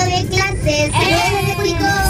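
High-pitched, child-like singing voice with wavering pitch over backing music: a sung station jingle.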